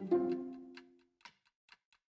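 Background string music ends on a held note that fades out within the first second. Light, irregular ticks follow, a few each second.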